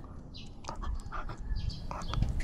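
A dog moving close to the microphone: low rumbling and light clicks from its movement, with a few short breathy puffs.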